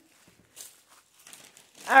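A few faint, brief rustles of packing paper.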